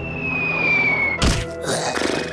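Cartoon background music with a high whistle-like tone gliding downward, cut off by a single sharp thunk about a second and a quarter in. The thunk is followed by a short rushing swell near the end.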